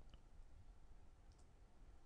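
Near silence: faint room tone with a faint computer-mouse click near the start and another about a second and a half in.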